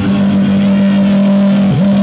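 Amplified electric bass guitar holding one long note during a solo, with a quick dip in pitch and back up near the end.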